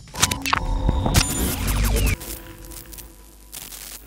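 Outro transition sting: a cluster of whooshes and hits starting about a quarter second in and lasting about two seconds, then a quieter tail that swells briefly near the end.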